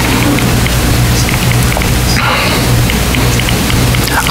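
Steady hiss with a low electrical hum, the background noise of the sound system and recording feed, with no speech.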